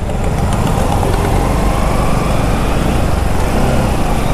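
Motorcycle engine running at low speed in slow city traffic, heard from the rider's seat as a steady low rumble.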